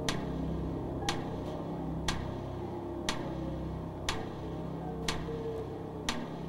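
Game-show countdown timer ticking once a second, each tick a sharp click, over a low, sustained music bed: the contestant's 30-second answer clock running down.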